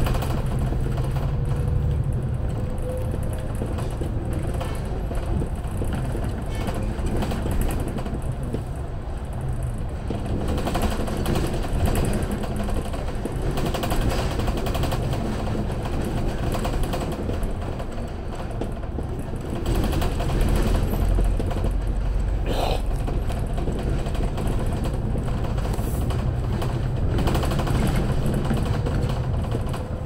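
Inside a double-decker bus on the move: steady engine and road rumble with constant small rattles from the bodywork, and a faint whine that rises slightly near the start and near the end. The rumble grows louder about two-thirds of the way through.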